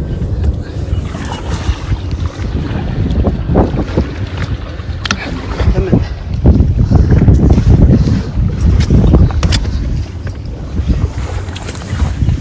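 Small rescue boat moving across floodwater, with wind buffeting the microphone in an uneven, gusting rumble that swells loudest in the middle.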